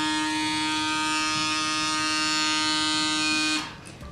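PMD personal microdermabrasion wand's small suction motor running with a steady buzzing hum, which stops about three and a half seconds in.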